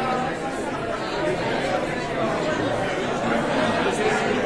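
Crowd chatter: many people talking at once in a large hall, with no single voice standing out.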